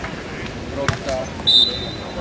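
A beach volleyball is struck once in a forearm pass, a single sharp slap about a second in. It is followed by a loud, short, high whistle-like tone, with voices in the background.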